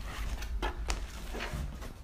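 Large cardboard box being turned and shifted on a tabletop: a few short scrapes and knocks over a low rumble.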